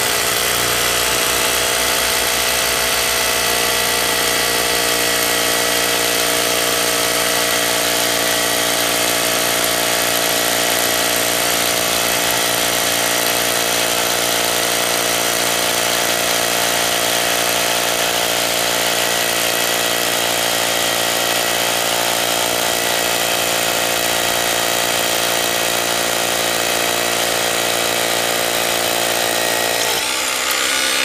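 DEKTON cordless three-function rotary hammer drill running steadily, hammer-drilling a 10 mm masonry bit into a block of bluestone. It bores in easily without needing to be pressed down.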